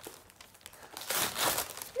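Gift wrapping paper being torn and crumpled off a boxed present: quiet at first, then a dense run of paper rustling and tearing from about a second in.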